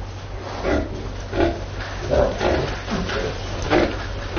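Pigs of the Anqing Liubai breed grunting in a farrowing pen: about six short grunts, one every half second to second.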